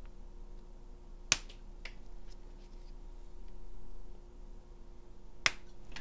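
Flush cutters snipping plastic mounting posts off a clear plastic tinywhoop frame: two sharp snaps, about a second in and near the end, with a few fainter clicks between.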